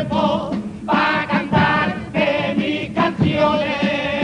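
A carnival chirigota group performing: a chorus of voices singing long, wavering notes together, with instrumental accompaniment.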